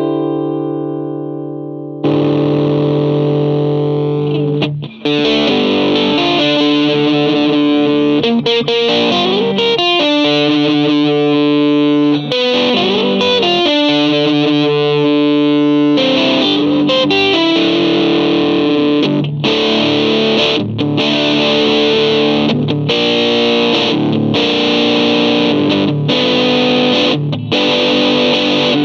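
Electric guitar played through a Boss XT-2 Xtortion distortion pedal, its sound heavily distorted. A held chord rings out, a new chord is struck about two seconds in, and from about five seconds a busy riff of chords and single notes runs on, with brief breaks in the middle.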